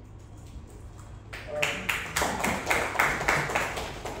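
A small audience clapping. It starts about a second in and runs as a quick patter of many hands for more than two seconds.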